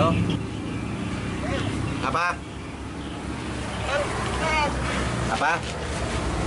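Steady low rumble of a truck engine idling, under a man's short spoken questions into a phone.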